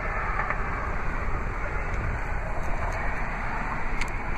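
Steady low background noise with no distinct events, the kind of outdoor sound picked up by a handheld microphone beside a parked car.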